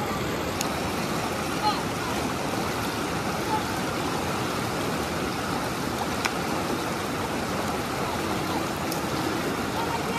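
Shallow rocky river flowing steadily, a continuous rush of water over stones, with a few faint splashes from children wading in it.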